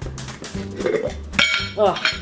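A glass jar's lid is twisted open, with one sharp click and a brief ring about one and a half seconds in, over background music.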